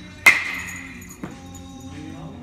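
Baseball bat striking a pitched ball, a sharp crack with a ringing ping that fades over about half a second. A weaker knock follows about a second later.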